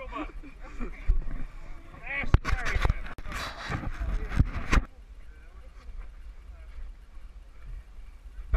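Indistinct men's voices and laughter with sharp knocks and bumps on a body-worn camera microphone, dropping to a quieter stretch of outdoor noise for the last few seconds.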